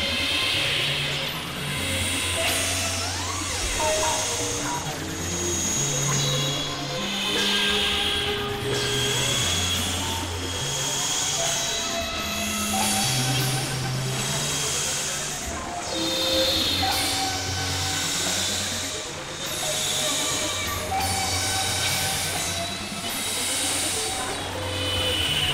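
Experimental electronic synthesizer music: layered held tones over low drones, with notes shifting pitch and the whole swelling and easing about every two seconds.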